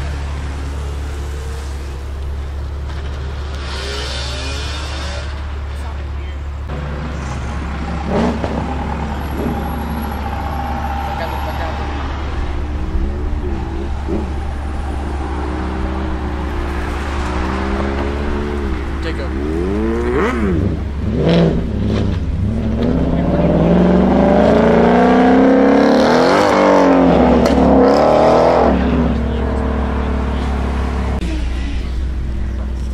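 Cars accelerating away one after another, their engines revving up and down. Near the end one car pulls away hard with a loud rising engine note, the loudest part of the clip. A steady low hum runs underneath.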